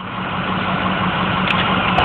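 Electric hydraulic leveling-jack pump running steadily with a low hum as it retracts the jacks and builds pressure.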